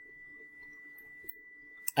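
Quiet room tone with a faint steady high-pitched tone, then a computer mouse click near the end as a link is clicked.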